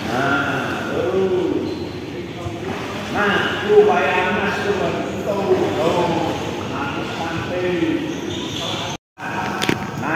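Indistinct voices of people at a swimming pool, talking and calling. The sound cuts out completely for a moment about nine seconds in.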